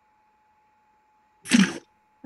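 A person sneezing once, short and sharp, about one and a half seconds in, after a stretch of faint steady hum.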